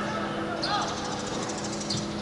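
Shouted calls from players on a football pitch over a steady low hum. A fast, even rattle sounds from about half a second to just past a second.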